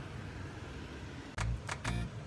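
Steady hiss of heavy rain on the aircraft's windows and skin, heard from inside the cabin. About one and a half seconds in, a quick run of sharp clicks and low thumps.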